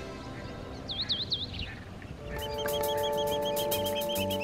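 Background music: quiet at first, with three quick chirps about a second in, then from just past halfway sustained chords over a fast, even ticking beat.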